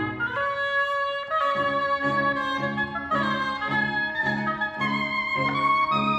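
Live chamber septet of violins, viola, flute, oboe, cello and double bass playing contemporary classical music: held oboe and string tones over a low figure that pulses about twice a second. A higher held line joins near the end.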